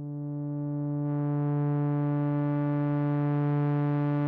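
Pioneer Toraiz AS-1 monophonic analog synthesizer playing a pad sound: one sustained low note that swells in slowly and grows brighter about a second in.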